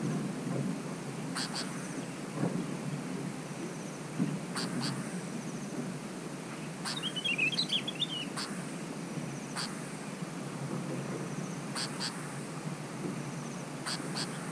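Bulbuls calling at a trap: short, sharp two-note calls repeat every one to three seconds, and a brief warbling phrase comes about halfway through, the loudest moment. Steady low background noise runs underneath.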